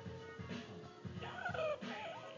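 Faint music with a steady low beat, about two beats a second, and a few short wavering higher tones in the second half.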